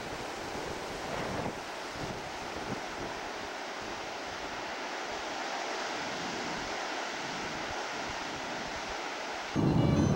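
Ocean surf washing over rocks below, a steady hiss of waves, with wind buffeting the microphone in the first couple of seconds. Just before the end it cuts abruptly to louder road noise from inside a moving vehicle.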